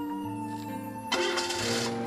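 Background drama score of held, sustained notes. About a second in, a brief loud rush of noise lasts just under a second.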